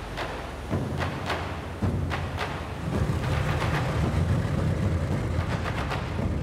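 Low, steady engine drone of landing craft under way, with scattered sharp cracks and thuds over it. The drone drops away briefly about a second in, then returns stronger from about three seconds on.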